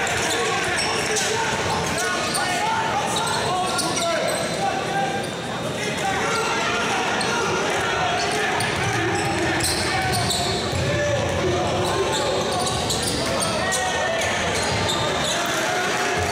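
Live basketball game sound: the ball bouncing on the hardwood court during play, over a crowd talking and calling out.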